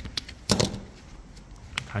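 Hand-tool work on a screen frame: a couple of sharp clicks, then a louder knock about half a second in and another click near the end, as a utility knife trims the welded burr off the end of the frame's mohair channel.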